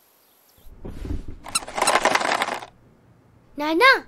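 A cartoon sound effect: a low rumble about half a second in, running into a rattling, clattery noise that stops about two-thirds of the way through. A high cartoon voice begins speaking near the end.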